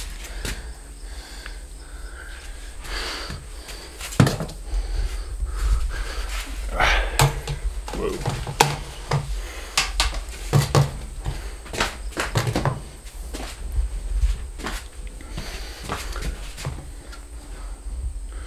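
Irregular clicks, knocks and handling noise as a steel threaded rod and a wall clamp are fitted around a metal vent pipe, with a low rumble underneath.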